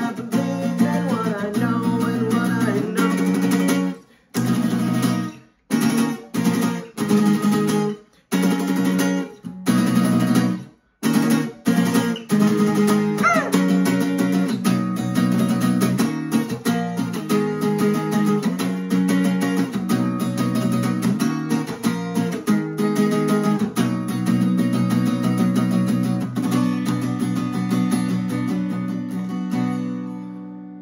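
Acoustic guitar strummed through an instrumental break. A few seconds in comes a run of short chord hits, each cut off into sudden silence, then steady strumming until a last chord rings out at the very end.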